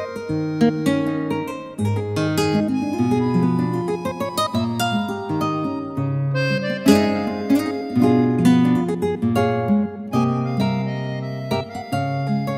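Yamaha Genos workstation keyboard playing an instrumental arrangement: a melody of quick, separate notes over a bass line that steps from note to note.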